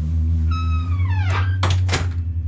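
A single animal-like call sliding down in pitch over about a second, followed near the end by a few sharp knocks, over background music with a steady bass line.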